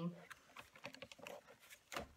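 Faint small taps and rustles of paper pages and a journal being handled and shifted on a tabletop, with a sharper tap near the end.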